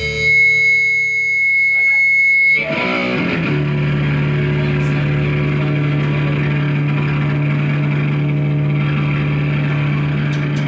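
Electric guitar feedback and amplifier drone at a loud punk gig. A sustained ringing, high feedback tone holds for about two and a half seconds, then gives way to a noisier, lower, steady droning that runs on without drums.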